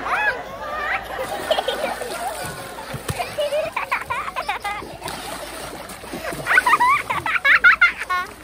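Pool water splashing and sloshing as a person in a furry mascot suit wades and thrashes waist-deep in an above-ground pool. Children's high-pitched voices come in and out over it, loudest near the end.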